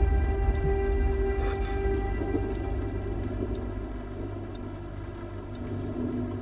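Soundtrack music: a sustained low drone of held tones over a deep rumble that slowly fades.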